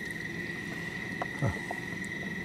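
Crickets trilling in one steady, unbroken high tone over a low background hiss.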